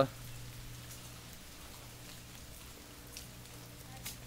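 Light rain pattering and dripping on wet paving and plants, a faint steady hiss, with a low steady hum underneath.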